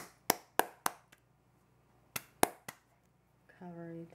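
A series of sharp, dry taps: about four in the first second and three more around two seconds in, with silence between. Near the end, a short hum of a woman's voice.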